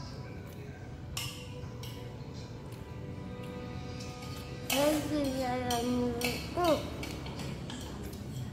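A child's voice in drawn-out, sing-song tones about halfway through, with faint clinks of a spoon against a bowl.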